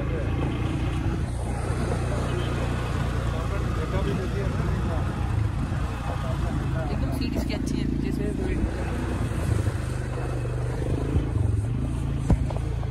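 Quad bike (ATV) engine running steadily under load with a constant low hum as it carries its riders along a gravel road.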